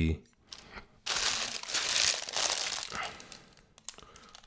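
Clear plastic packaging bag crinkling as it is handled, starting suddenly about a second in and lasting about two seconds.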